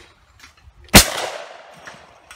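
A single shotgun shot at a clay target about a second in, very loud, its report dying away over about a second.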